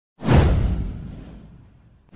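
A whoosh sound effect with a deep low rumble under it. It swells in sharply about a fifth of a second in and fades away over about a second and a half.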